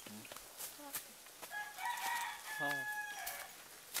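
A rooster crowing once, about a second and a half in: one long call held at a steady pitch for nearly two seconds, with a few short calls before it.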